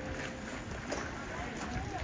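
Outdoor crowd ambience: faint, indistinct voices of people talking over a steady low rumble, as of wind on the microphone.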